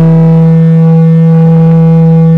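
Distorted electric guitar holding one sustained note, its upper overtones dying away while the low fundamental rings on steadily.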